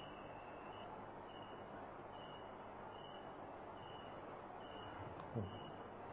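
A pause in a recorded talk: faint steady hiss and low hum of the recording, with a faint short high beep repeating a little more than once a second.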